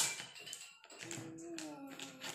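Plastic interlocking puzzle-block panels clicking and tapping together on a tabletop as they are fitted and handled, with one sharp click at the start and lighter taps after. In the second half a soft low hum holds, falling slightly in pitch.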